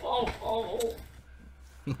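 A man's voice for about the first second, then near quiet with a few faint clicks.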